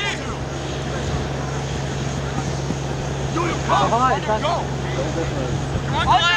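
Wind noise on the microphone over a steady low drone, with a brief distant shout a little past halfway.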